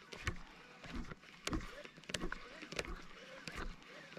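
Faint handling sounds of fishing gear in a canoe: a handful of scattered light clicks and knocks as a baitcasting rod and reel are worked during a lure retrieve.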